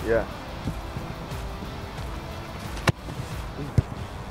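A football struck hard with a single sharp kick about three seconds in, followed just before the end by a second, softer knock as the ball lands or hits something, over background music.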